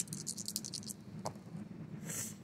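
Plastic six-sided dice being shaken for a roll: a quick run of faint, high clicking in the first second, then a single light tap.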